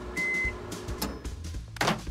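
Microwave oven beeping once, a short steady tone, as its timer runs out, over background music. A short burst of noise comes near the end.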